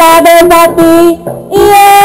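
A high-voiced singer singing a song in the local Malay dialect over instrumental accompaniment, loud held notes broken by short pauses.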